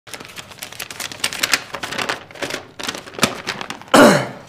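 Rapid, irregular crackling clicks of a sheet of paper being handled and unfolded, ending in a loud, short downward swoosh.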